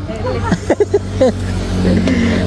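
Short bits of voices over a steady low rumble of a vehicle engine running nearby, which grows a little stronger near the end.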